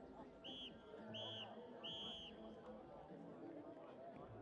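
Referee's whistle blown three times in quick succession, each blast a little longer than the last, over low crowd chatter: the full-time signal.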